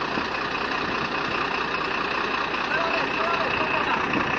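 A vehicle running, heard from inside its cab as a steady, even rumble and noise.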